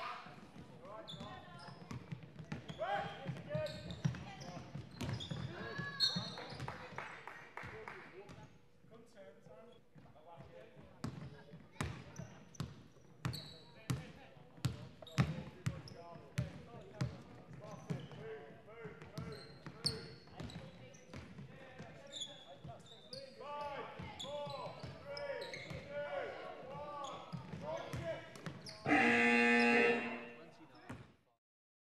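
Basketball game on a wooden sports-hall court: the ball is dribbled with a steady bounce about once a second midway through, sneakers squeak, and players' voices carry in the echoing hall. Near the end a loud electronic scoreboard buzzer sounds for about a second, stopping play.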